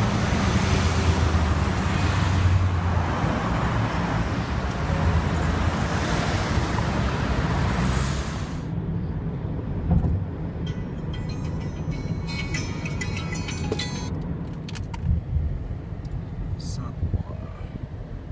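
Road traffic on a busy city street, a loud steady rumble of engines and tyres. About nine seconds in it cuts to the quieter, steady drone of a car cabin while driving, with a few light clicks.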